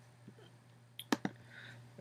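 Three quick, sharp computer mouse clicks about a second in, over a faint steady low hum.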